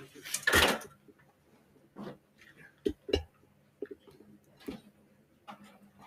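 A short breathy vocal sound near the start, then a few faint knocks and clicks of things being handled on a desk, over a low steady hum.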